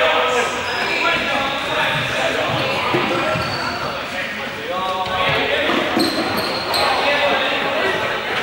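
Balls bouncing and thudding on a sports-hall floor while many students call out and chatter, the whole din echoing around a large gymnasium.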